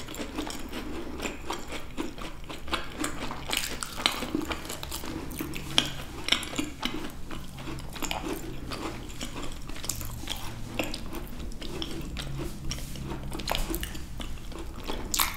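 Close-miked chewing of macarons by two people: soft, sticky mouth sounds broken by many small, irregular crisp clicks.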